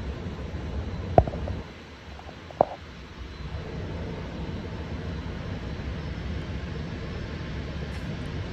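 Low, steady outdoor rumble of background noise on a phone video recorded street-side, broken by two sharp clicks about a second and two and a half seconds in.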